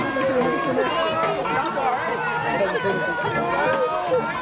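Crowd of spectators chattering, many voices overlapping at a steady level.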